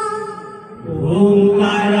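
A held melodic note fades out over the first second. Then a woman's voice slides up into a long, steady chanted note, "Hare", of an Odia devotional kirtan, sung into a microphone.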